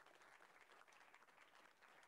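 Very faint audience applause, many hands clapping at the end of a pitch.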